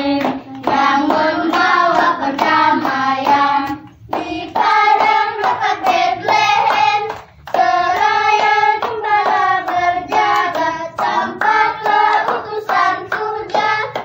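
A group of children and women singing a song together, with two short pauses between lines, about four and seven seconds in.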